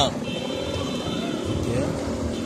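Running noise of a car heard from inside its cabin while driving along a street: a steady low rumble of engine and tyres, with a faint thin high-pitched tone through the first second or so.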